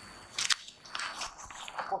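A few sharp clicks and rustling strokes, the loudest about half a second in, like something small being handled. A man's voice starts near the end.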